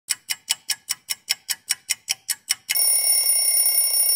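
Title-sequence sound effects: a quick run of about thirteen bright, metallic ticks, about five a second, followed about two and a half seconds in by a steady high ringing tone.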